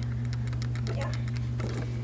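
Quick light clicks and rustles of a handheld camera being handled and swung about, over a steady low hum.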